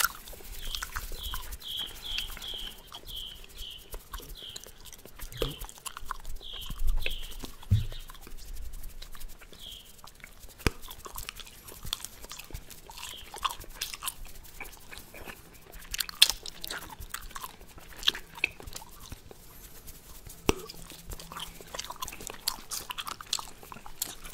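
Bubblegum chewed close to a microphone: irregular wet smacking and clicking mouth sounds. A run of short high chirps sounds over the first few seconds.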